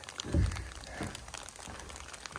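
Crinkly rustling of a hiker's clothing and gear as he settles to sit down. There is a soft low thump about half a second in and a fainter one at about one second.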